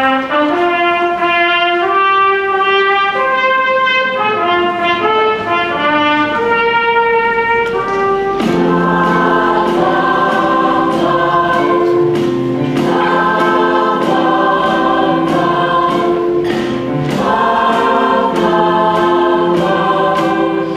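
A trumpet plays a solo melody, then about eight seconds in a large children's choir comes in singing over an accompaniment with a steady beat.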